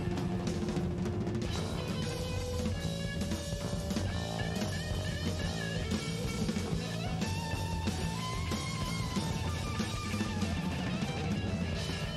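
Live rock band playing: electric guitars over a drum kit, at a steady pace.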